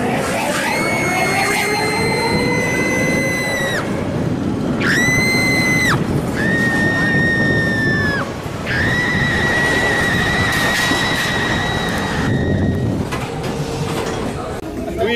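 Riders on the Space Mountain roller coaster screaming in the dark. There are four long, high screams, each held at a steady pitch and dropping off at its end, the last and longest running about four seconds. Under them runs the rumble of the coaster car on its track.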